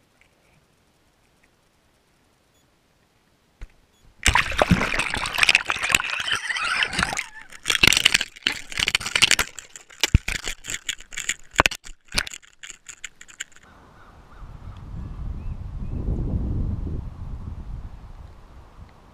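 A GoPro in its waterproof housing being reeled up through the water and lifted out. The first seconds are almost silent. About four seconds in, loud water noise and splashing start around the housing, with many sharp knocks and clicks for some nine seconds. A softer low rumbling noise follows near the end.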